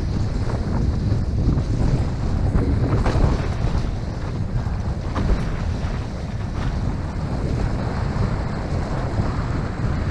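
Steady wind buffeting a board-mounted action camera's microphone as a windsurf board sails through choppy water, with water rushing along the hull and a few light slaps of chop.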